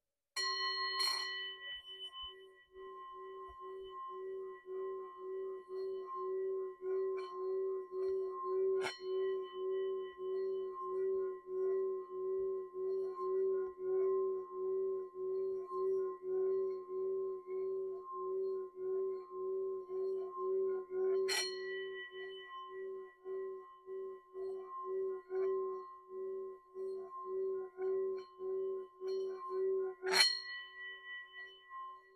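Brass singing bowl struck with a wooden mallet, then made to sing in a long sustained ring that wavers and pulses about twice a second, as from the mallet circling the rim. Sharper strikes come twice more, at about a third and about two-thirds of the way through.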